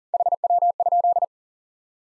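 Morse code at 40 words per minute: a steady tone of about 700 Hz keyed in quick dits and dahs for just over a second. It sends the QSO abbreviation for "how copy" (HW).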